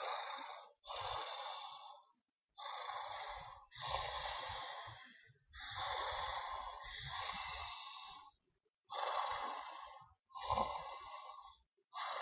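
A man breathing heavily and deeply through his mouth: long, noisy breaths in and out, about eight of them with short pauses between.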